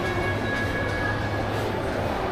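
Indoor shopping-mall ambience: a steady low mechanical hum with a few faint, even high-pitched whines over it.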